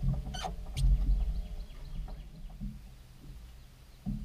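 A brief splash or two as a released bass is dropped back into the lake, over a low rumble of wind on the microphone.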